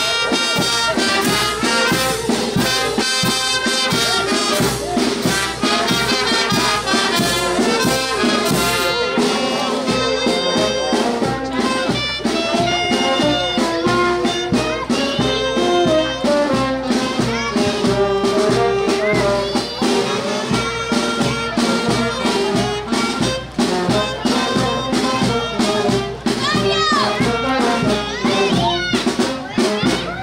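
Brass band music, trumpets and trombones playing over a steady drum beat.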